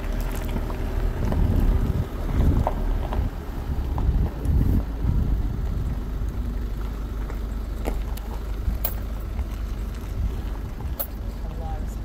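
A vehicle creeping along a gravel road, heard from inside: a steady low rumble of engine and tyres on gravel. The rumble swells twice in the first five seconds, with a few faint ticks.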